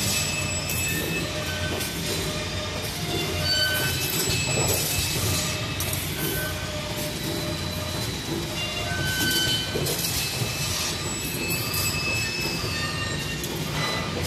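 Steady factory-floor machinery noise with short, high-pitched squeals coming and going and light metallic clatter; a whine rises and falls about three-quarters of the way through.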